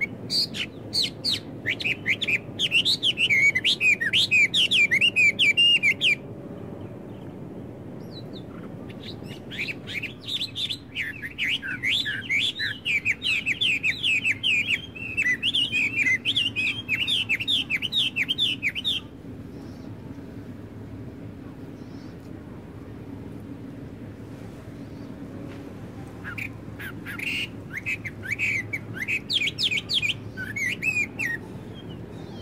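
A songbird singing long runs of quick, high chirping notes in three spells, with pauses of a few seconds between them, over a steady low background rumble.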